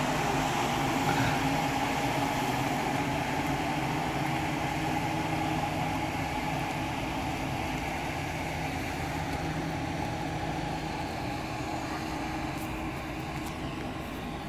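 Engine of a 2016 Chevrolet Silverado 1500 pickup idling steadily, slowly growing fainter.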